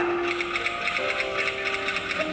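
Typewriter-style key-clicking sound effect: a rapid run of clicks over held music notes, with the notes changing about a second in.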